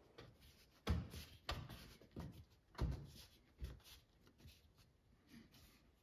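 Soft knocks and scuffs of a wooden inlay patch being pressed by hand into its routed recess, about five faint thumps in the first four seconds, then little.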